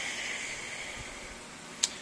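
Steady low hiss of a running aquarium's water and equipment, with one short click near the end.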